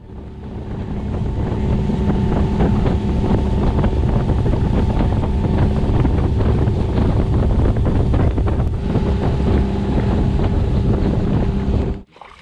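Small fishing boat's outboard motor running steadily at speed, a constant hum under heavy wind buffeting on the microphone. It fades in over the first couple of seconds and cuts off abruptly at the end.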